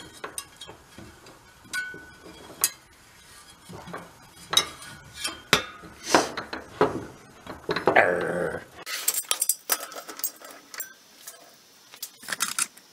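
Scattered metallic clicks and clinks as the moped's wire-wheel hub, axle and small steel bearing parts are handled during reassembly of the hub's loose-ball bearings. A short voice-like sound with a bending pitch comes about eight seconds in.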